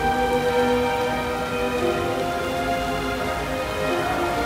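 Rain falling, with a slow melody of long held notes playing over it, the closing-time music that accompanies the closing announcement.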